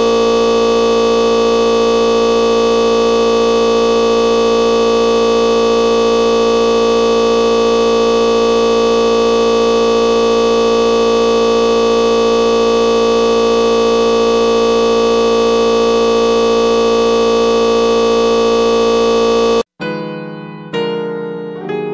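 A loud, completely unchanging buzzing drone made of many steady tones, held for about twenty seconds and then cutting off abruptly near the end. It is a digital audio glitch: the song's sound froze on one instant and kept repeating.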